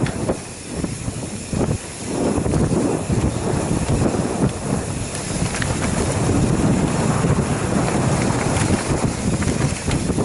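Wind buffeting the microphone of a camera riding on a mountain bike going fast downhill on a dirt trail, mixed with a steady rattle and clatter of the bike and tyres over the rough ground. It gets louder about two seconds in.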